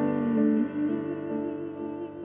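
Live band music: voices humming a slow, wordless harmony over quiet keyboard chords, easing down in loudness.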